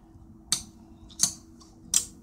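Metal bottle caps clicking against a magnetic bottle-cap catcher: three short, sharp clicks about two-thirds of a second apart.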